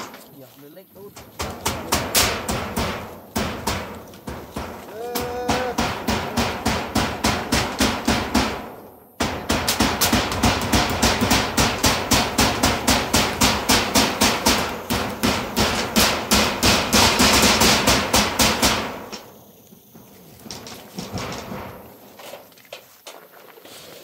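Hammer blows on a corrugated metal roofing sheet, nailing it down: fast, steady strokes at about three or four a second. There is a short break about nine seconds in, and the strokes stop a little before the end.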